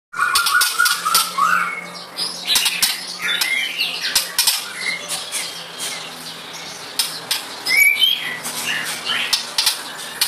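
A caged white-rumped shama giving short chirps and whistles amid many sharp clicks and taps, busiest in the first half.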